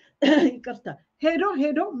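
A woman's voice speaking in Amharic, in two phrases with a short pause about a second in.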